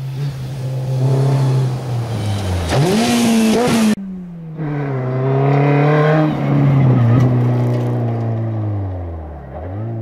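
Honda Civic Type R rally car's engine revving hard at speed, its pitch climbing sharply about three seconds in, then falling away and dipping once more near the end at a gear change. The sound breaks off abruptly twice.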